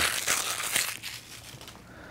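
Clear plastic shrink-wrap crinkling as it is pulled off an earphone box and crumpled by hand, dying away about a second in.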